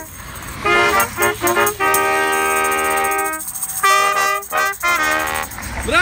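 A small brass section of trombone, saxophone and trumpet plays a tune, with a tambourine shaken along: first short detached notes, then a chord held for over a second, then another run of short notes that stops just before the end. Motorway traffic rumbles underneath.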